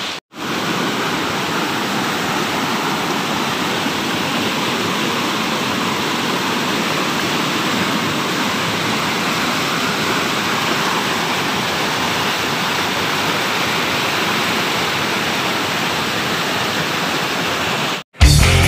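Fast-flowing rocky mountain river rushing over boulders in white-water rapids: a steady, unbroken wash of water noise. The sound drops out for a moment at the very start.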